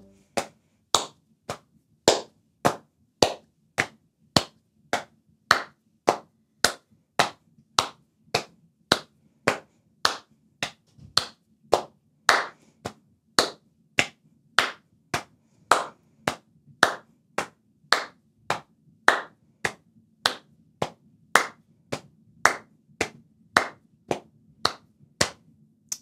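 Body percussion: hands patting the lap and then clapping, alternating in a steady beat of a little under two strokes a second.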